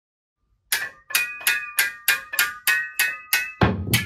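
Short percussive music sting: a run of evenly spaced struck hits with a bright ringing tone, about three a second, starting just under a second in and ending in a heavier hit with a deep thump.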